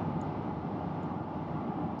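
Steady low rumble of road traffic: cars driving along a wet street.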